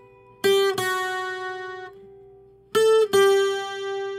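Acoustic guitar picking single notes of a requinto lead line. A pair of quick notes about half a second in rings out and fades, then a second pair near three seconds in rings on to the end.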